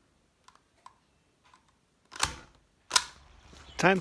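Handling noise of the camera as a hand takes hold of it: a few faint clicks, then two sharp knocks about three-quarters of a second apart.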